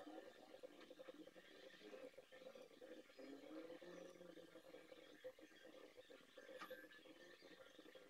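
Near silence: faint room tone with indistinct low background sounds.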